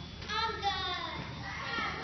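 A child's voice calling out briefly about half a second in, over the low chatter of a room full of children.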